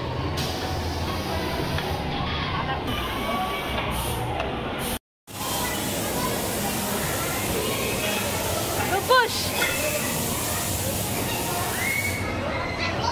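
Crowd babble of children and adults talking, with a short break in the sound about five seconds in. Around nine seconds a child's high voice sweeps up and down briefly.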